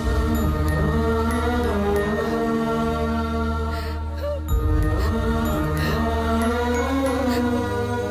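Film background score: chant-like voices holding long notes over a low steady drone, the drone dropping out briefly about halfway through.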